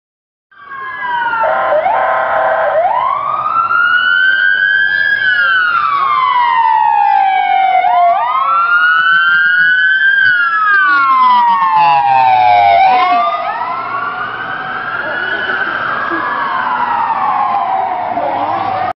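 Emergency vehicle sirens wailing, the pitch rising and falling slowly about every five seconds. Two sirens run slightly out of step, with a brief quicker warble just after they start.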